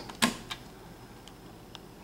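A sharp click of a wall thermostat's System slide switch being pushed to Cool, followed by a few faint ticks over quiet room tone.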